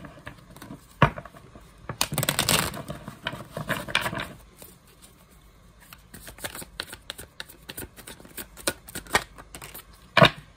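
A tarot deck being shuffled by hand: a dense rustle and clicking of cards for about the first four seconds, with one sharper snap about a second in, then a lighter patter of ticks as the shuffle continues.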